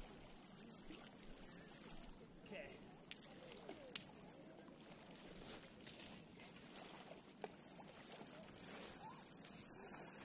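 Small lake waves lapping faintly on a pebble shore, with distant voices now and then and a few sharp clicks, the sharpest about four seconds in.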